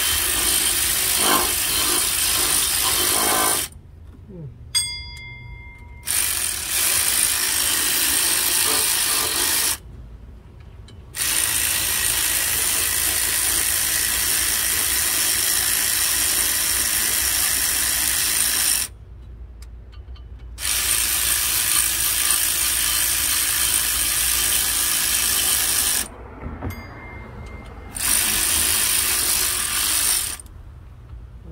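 Ratchet wrench clicking rapidly in long runs of several seconds as it turns the water pump bolts on a Chevrolet 5.3 L V8. It stops briefly four times.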